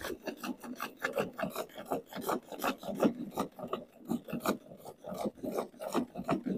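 Hand-milking a cow: jets of milk squirting into a steel bucket in quick, even strokes, about three a second.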